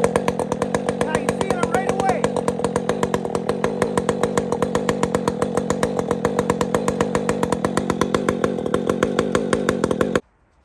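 Husqvarna 562 two-stroke chainsaw running steadily out of the cut with an even, rapid pulse, then cutting off abruptly at the very end. The owner feels a vibration in this saw and suspects a bad engine mount.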